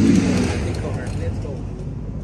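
Steady low rumble of a vehicle engine running close by, with a man's loud shout right at the start.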